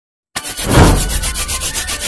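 Scissors scraping and cutting along the top of a cardboard box, starting about a third of a second in with a heavy thump, then a quick, even rasping rhythm.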